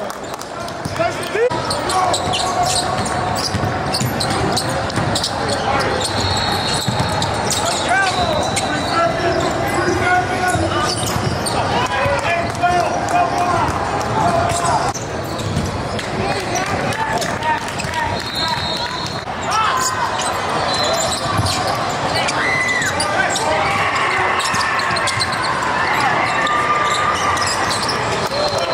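Basketball game sounds on a hardwood court: a ball bouncing repeatedly, mixed with indistinct players' voices and shouts.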